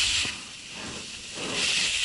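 Skis carving on packed snow: a scraping hiss that fades about half a second in and swells again near the end as the next turn begins.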